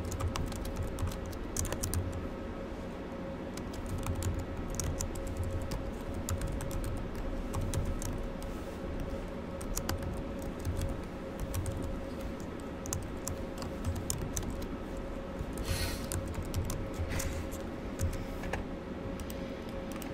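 Typing on a computer keyboard: irregular runs of keystroke clicks with short pauses, over a steady hum.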